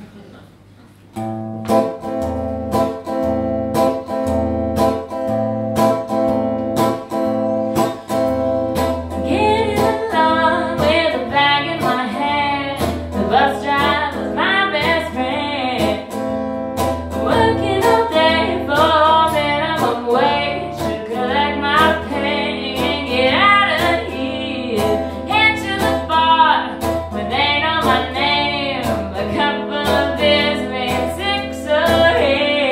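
Live song on a strummed electric guitar with a woman singing. The guitar comes in about a second in with steady rhythmic chords, and the woman's voice joins about nine seconds in.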